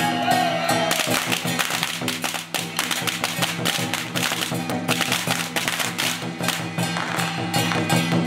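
Taiwanese temple-procession percussion: a dense, loud beat of large hand cymbals clashing over drum strokes, with a steady low ringing underneath.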